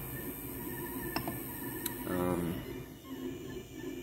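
Ender 3 3D printer running a print, with a steady low hum from its fans and motors. Two faint clicks come about a second in, and a brief murmured voice about two seconds in.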